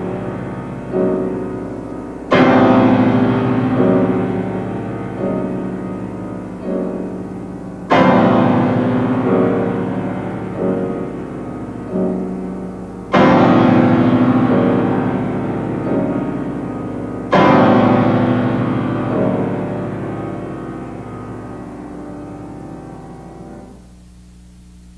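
Grand piano played solo, slow and chordal: four loud chords struck about every five seconds and left ringing to die away, with softer chords between them. The last chord fades out just before the end.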